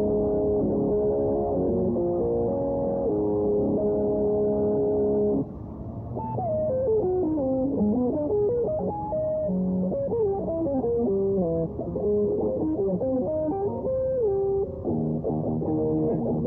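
Electric guitar playing: held chords ring for about five seconds, then a melodic lead line with sliding and bending notes, going back to chords near the end.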